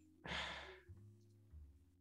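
A woman's short sigh, a single breath out lasting about half a second.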